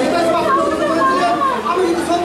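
A man singing unaccompanied into a handheld microphone, his voice amplified over a hall PA, with long wavering held notes.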